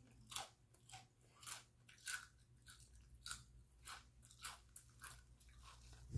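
A person chewing a mouthful of crunchy chips, a short crunch roughly every half second.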